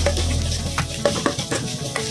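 Thai chili curry paste sizzling in hot oil in a stainless steel pot, with a spatula stirring and scraping it against the metal in quick repeated strokes. Background music with a low bass runs underneath.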